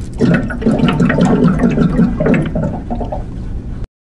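Water gurgling and glugging as it pours, with an irregular bubbling that cuts off suddenly near the end.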